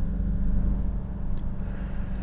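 A low, steady rumble with almost nothing above it.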